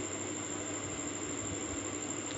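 Steady background hiss with a faint low hum.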